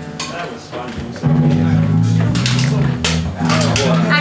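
A band instrument holding low, steady notes that start loudly about a second in and change pitch a few times, over talk in the room and a few clicks.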